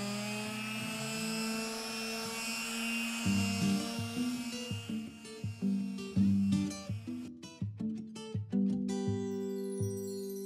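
Makita BO4553 finishing sander running on the glossy wooden top of a nightstand, scuffing off the finish. It cuts off about seven seconds in. Plucked acoustic guitar music comes in about three seconds in and carries on alone after the sander stops.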